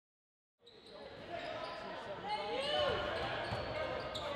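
Indoor basketball game: spectators talking and a basketball bouncing on the court, echoing in a large gym. It fades in from silence about half a second in.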